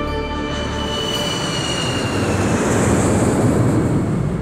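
Jet airliner passing overhead: a rushing roar with a high whine that slowly falls in pitch, swelling about three seconds in, as music fades out underneath.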